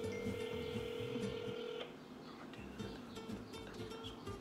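A telephone ringback tone through a phone's speaker: one steady ring of just under two seconds at the start, then the silent gap of the ring cycle while the call waits to be answered.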